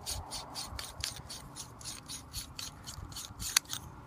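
Threaded metal cap of a OneTigris waterproof capsule being unscrewed by hand. The threads make a faint rasping in a quick series of short strokes, and a sharper click comes near the end.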